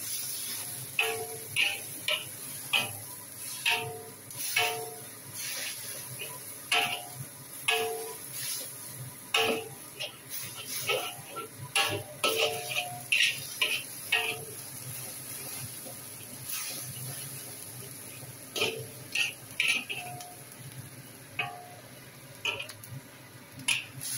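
Metal spatula scraping and knocking against a wok while seaweed fries in oil. Each stroke sets the pan ringing briefly, at irregular intervals of about one or two a second, over a steady frying sizzle.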